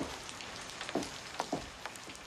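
Steady rain falling, with several sharper drips standing out above it.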